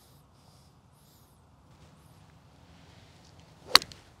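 A golf iron striking a ball off turf on a full swing: one sharp crack near the end, with a faint swish of the club just before it.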